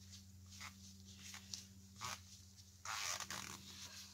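Faint rasping and rustling of gloved hands wiping a plastic syringe dry with a paper towel: a few short scrapes, then a longer rasp about three seconds in.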